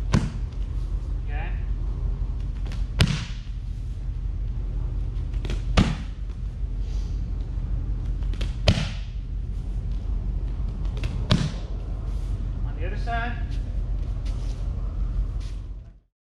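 Round kicks landing on Thai pads held by a partner: five sharp slaps of shin on pad, about three seconds apart.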